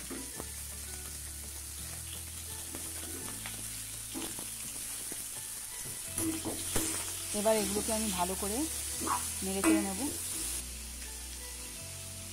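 Chopped tomato, green beans and onion frying in oil in a pan, with a steady sizzle. A spatula stirs them, giving a few short scrapes and knocks against the pan.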